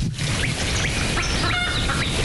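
Birds chirping, with many short, quick falling calls throughout and one louder squawking call about one and a half seconds in.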